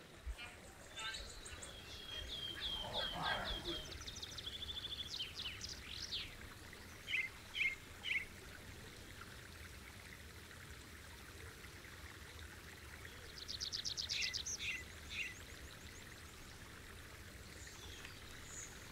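Songbirds singing: phrases of quick, high chirps and trills with quiet gaps between them, busiest in the first few seconds and again near the end.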